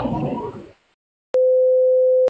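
A man's voice trails off in the first third; after a brief silence a single steady electronic beep tone starts past the middle and holds level, the test-card tone played over a TV test pattern as an edit transition.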